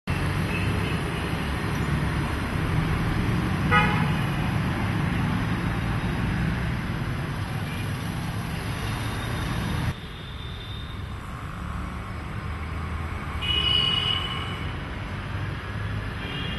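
Street traffic running steadily, with short car-horn toots: a sharp one about four seconds in and another near the end. The traffic drops suddenly to a quieter level about ten seconds in.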